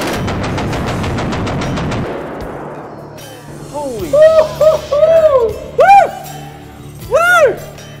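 A mounted belt-fed machine gun firing a very rapid burst that stops about two seconds in and dies away. From about four seconds in come loud swooping tones that rise and fall, with music.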